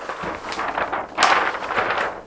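A sheet of plastic DTF transfer film crinkling and rustling as it is unrolled and handled, loudest a little past a second in.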